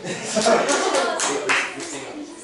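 An audience of children clapping briefly, with voices mixed in; the clapping fades near the end.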